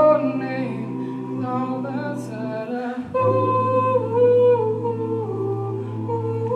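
Male a cappella group singing held chords over a sustained bass voice, with no instruments. The chord breaks off briefly near the middle and a new one comes in.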